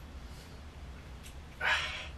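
A man's single sharp, forceful exhale of effort near the end, as he strains through a resistance-band rear-delt fly rep, over a low steady hum.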